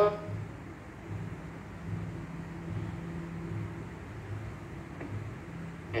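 Steady low mechanical hum with a slow, regular throb about once every 0.8 seconds.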